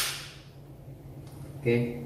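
A single sharp click right at the start, fading quickly into quiet room tone: the EZVIZ C1C camera's magnetic base snapping onto its metal mounting plate.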